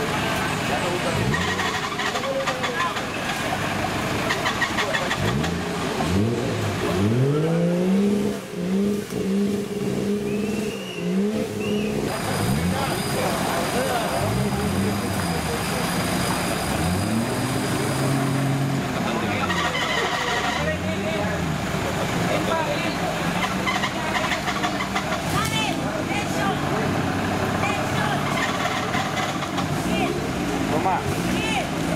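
An off-road 4x4 competition truck's engine revving again and again, each burst rising and falling in pitch, as the truck works in a steep muddy gully. About eight surges come in all: a long one a quarter of the way in, then a run of shorter ones through the second half.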